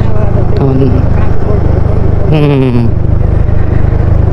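Steady low wind rumble on the microphone over a scooter's small engine running at low road speed, with two brief snatches of the rider's voice.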